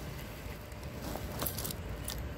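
Faint rustling and a few light clicks of a purse being opened and rummaged through, with a low steady rumble of wind on the phone's microphone; the clicks come about one and a half seconds in.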